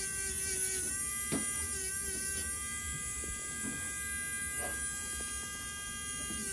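Podiatry electric nail drill with a cone-shaped grinding bit, running and grinding down a thickened toenail during debridement. A steady high whine that dips slightly in pitch now and then.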